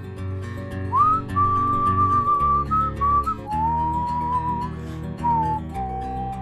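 A whistled melody over the song's guitar accompaniment in an instrumental break: the whistle slides up about a second in, holds a high note, then steps down through lower notes.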